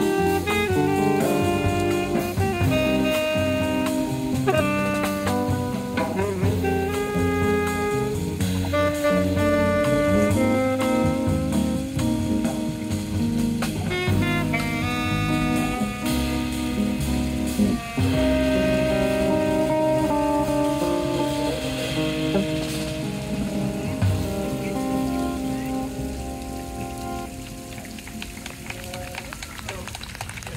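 A live jazz quartet playing: saxophone leading over electric guitar, upright bass and drum kit, the tune winding down and getting quieter near the end. Rain is falling.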